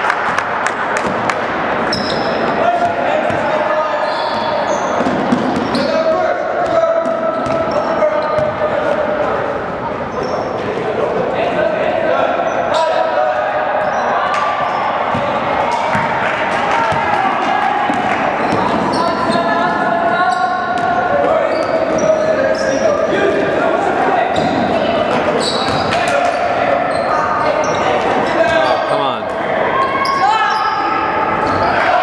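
Basketball dribbled on a hardwood gym floor during a game, with repeated bounces ringing in a large, echoing gym. Indistinct voices run underneath.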